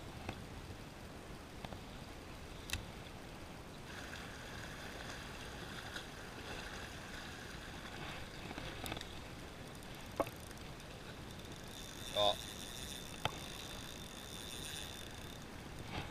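Gentle waves lapping against rocks, a quiet steady wash of water, broken by a few short, sharp clicks.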